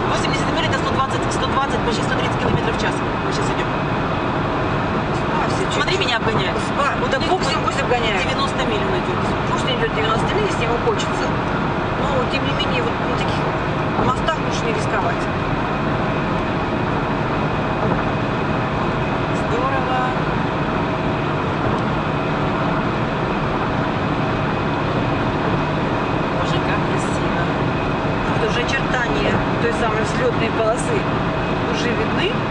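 Steady road and engine noise heard inside a car's cabin cruising on a highway at about 70 mph, with a constant hum under it.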